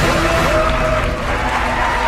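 Studio audience applauding and cheering over a celebratory music cue with sustained held notes.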